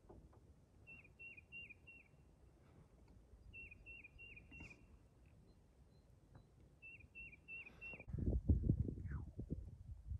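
A small songbird singing faintly: three short phrases, each of four quick whistled notes that slur downward, a few seconds apart. Near the end a louder low rumble of noise on the microphone comes in.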